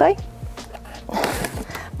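Background music, with a brief rustling scrape about a second in as a small plastic projector is taken out from storage and handled.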